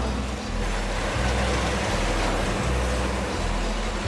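Band sawmill running as its saw head travels along a log, a steady mechanical noise, over background music with a low bass line.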